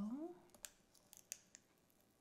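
Small piece of adhesive craft vinyl being handled and peeled from its backing sheet: a few faint, sharp clicks and crackles.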